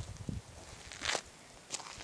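Footsteps of a person walking over dry dirt ground: two dull thuds at the start, then two sharper scuffing steps about a second in and near the end.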